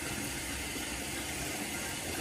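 Bathroom faucet running into the sink, a steady even hiss of water.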